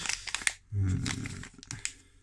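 Crinkling and crackling of a metallised anti-static foil bag being handled, in short irregular bursts, with a short low hum about a second in.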